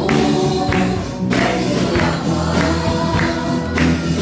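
Punjabi Christian Christmas song: singing over a band with a steady beat and tambourine.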